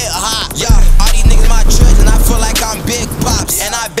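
Hip hop track with heavy 808 bass notes under a vocal line. The bass drops out near the end.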